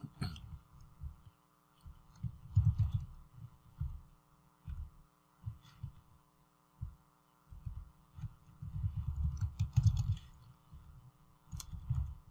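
Irregular low thuds and bumps in clusters, heaviest about three seconds in and again from about eight to ten seconds, over a faint steady electrical hum of several tones, with a few faint clicks.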